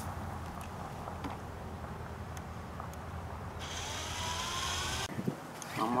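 A low steady rumble, then about three and a half seconds in a cordless drill runs for about a second and a half, its whine rising, and stops suddenly as it works into a wooden fence picket.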